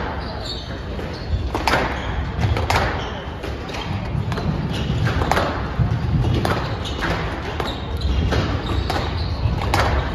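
Squash rally: the ball smacked by racquets and off the walls of a glass court about once a second, with a ringing echo of a large hall. Beneath it, a steady murmur of spectators talking.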